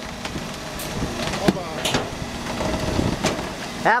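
Rear-loading garbage truck's compactor crushing a couch, over the truck's steady running noise, with several sharp cracks and snaps as the couch breaks up.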